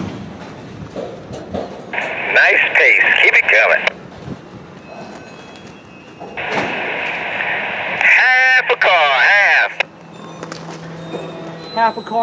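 Two bursts of railroad two-way radio traffic heard over a scanner: a thin, narrow-band voice in squelch hiss, each starting and cutting off abruptly, the second longer. They are the crew's car-count calls guiding a slow shove back to couple a car.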